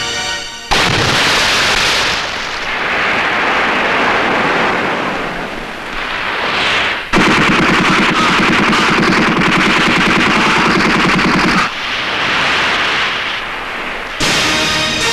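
Automatic rifle fire as a film sound effect: a loud sudden onset about a second in, then one long, unbroken rapid burst of about four and a half seconds starting about seven seconds in.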